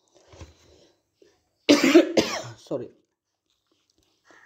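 A person coughing, two coughs in quick succession about two seconds in, trailing off briefly.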